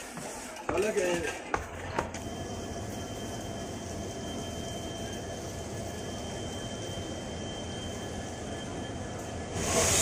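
Steady drone of a train standing at a station platform: a low hum with a thin, steady high whine over it. There are a few brief voice sounds in the first two seconds and a short rush of hiss just before the end.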